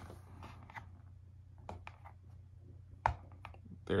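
Light clicks and taps of a phone and its USB-C charging cable being handled on a desk, with one sharper tap about three seconds in, over a faint low hum.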